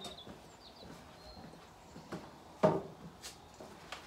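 A single dull thump about two and a half seconds in, over faint outdoor quiet with a few bird chirps.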